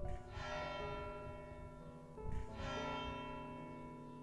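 Monastery church bell striking the quarter hour: two strokes about two seconds apart, each left ringing and slowly fading.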